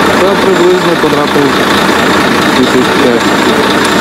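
Steady engine noise from fire engines running at a fire scene, with a person's voice talking over it.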